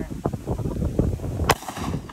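A single sharp gunshot from an AR-15 rifle firing a golf ball, about one and a half seconds in, with a short echo trailing after it.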